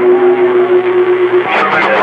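CB radio receiver audio: a steady tone over hiss, with another station's voice breaking in about one and a half seconds in.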